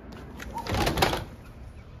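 A sliding glass door being slid open: one short rolling sound about a second in.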